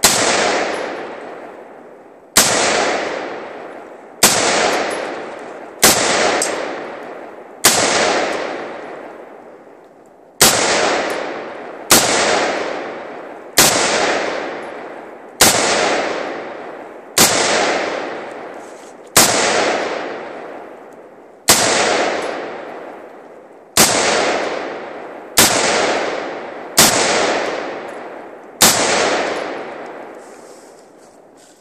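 AR-15 rifle in .223 fired semi-automatically, about sixteen single shots at an uneven pace of one every one and a half to two and a half seconds. Each loud crack is followed by a long fading echo.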